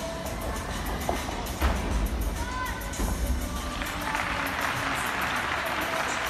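Busy gymnastics arena: background music over crowd murmur and voices, with a few low thuds in the first half and a swell of crowd noise from about four seconds in.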